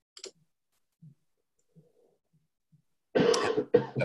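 A person coughing once about three seconds in, after a short, faint click and otherwise near silence.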